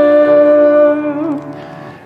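The last held note of a congregational worship song, sustained with a slight wobble and then dying away in the second half.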